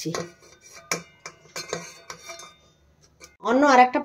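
Metal strainer knocking and clinking against the rim of a metal cooking pot as cooked basmati rice is tipped in: several sharp knocks with brief metallic ringing over the first two and a half seconds.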